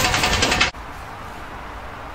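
A loud burst of rustling and scuffling in dry leaf litter as bodies struggle on the ground, cutting off abruptly less than a second in. After that only a faint steady background remains.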